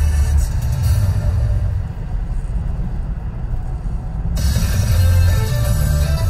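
Music playing over the car radio, with strong bass. The treble fades out about two seconds in and cuts back in suddenly a couple of seconds later.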